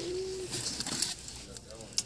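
A person's voice holding a short, steady vocal note for about half a second, followed by faint background talk. A sharp click comes right at the end.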